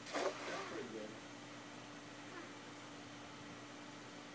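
A cast net landing on the water in one short splash, right at the start.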